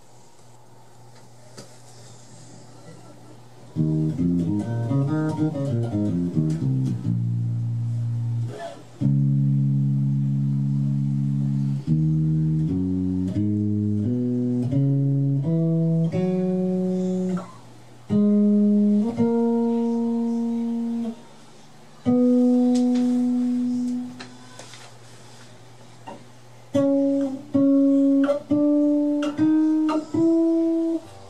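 Passive DR Custom Basses Jona electric bass with a Bartolini pickup being played: a low hum for the first few seconds, then a quick flurry of plucked notes, held low notes, a run of single notes stepping upward, a few notes left to ring, and short notes near the end.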